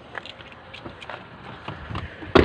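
Faint, scattered clicks and rustles from a phone being handled and swung around, over a low rumble.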